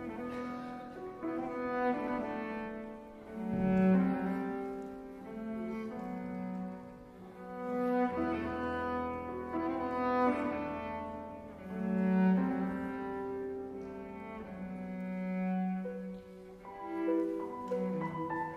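Cello and piano playing: the cello bows long sustained notes that swell and fade roughly every four seconds, over held piano notes and a low sustained bass tone.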